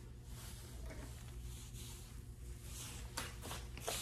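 A grooming comb drawn through a Yorkshire Terrier's long silky coat: soft rustling strokes, with two sharper ones near the end, over a low steady hum.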